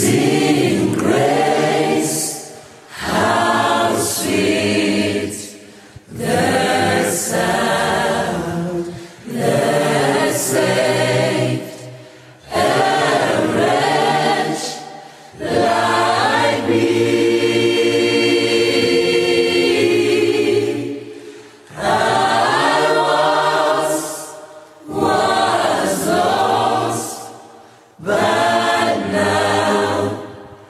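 A choir singing a slow gospel-style passage in phrases of two to three seconds with short breaks between them, holding one long chord for about five seconds past the middle.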